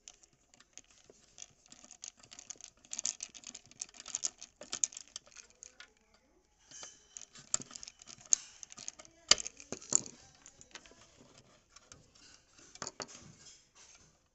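Screwdriver working the terminal screws of an old electric iron, with handling of the wires and housing: irregular small clicks, scrapes and rattles of metal and plastic, with a brief pause about six seconds in.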